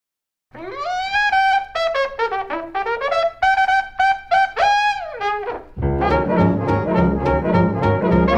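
1945 swing-era small jazz band recording: an unaccompanied brass horn plays an opening phrase with slurred slides up and down, then the full band with rhythm section comes in near six seconds in.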